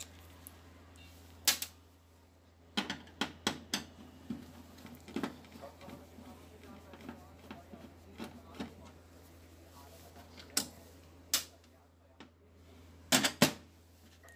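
A screwdriver backing out the screws that hold an LCD TV's power supply board to its sheet-metal back panel: scattered sharp metallic clicks and taps, with a quick cluster about three seconds in and a quick pair near the end.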